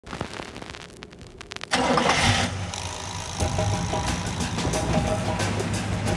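A motor starts abruptly about two seconds in, then runs with a steady low hum and light rattling: a garage door opener lifting the door.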